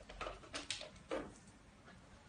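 Handling noises as tins of canned fish are tucked under clothing at the waist: about four short rustles and knocks in the first second and a half, then quieter.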